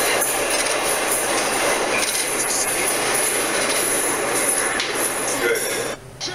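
Subway train noise in a station: a loud, steady din of wheels on rails with high squealing, cut off suddenly at the end.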